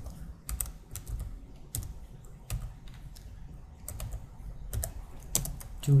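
Computer keyboard typing: a run of irregular keystroke clicks with short pauses, as a router command with an IP address is entered.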